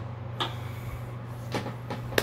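Three short knocks over a steady low hum.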